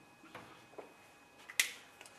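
Faint marker strokes on a whiteboard, followed by a single sharp click about one and a half seconds in.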